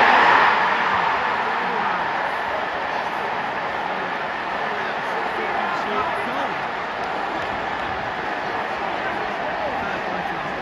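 Football stadium crowd roaring at a goal that puts the away side 3-1 up, loudest about the first second, then settling into sustained cheering from many voices.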